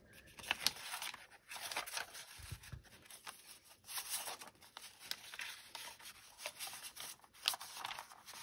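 Paper rustling and crinkling as hands handle and slide pieces of paper ephemera into a paper pocket, with scattered light clicks and taps and a dull bump about two and a half seconds in.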